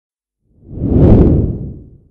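A deep whoosh sound effect that swells in about half a second in, peaks just past the middle and fades away near the end.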